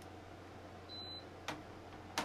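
A single sharp click about one and a half seconds in, over a low steady hum and faint room noise.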